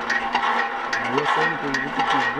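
Water gushing from a hand-pumped well spout into a plastic jerrycan: a steady splashing hiss with faint knocks. A person's voice joins about a second in.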